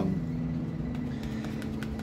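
Steady background hum of room noise, with a faint unchanging tone running through it.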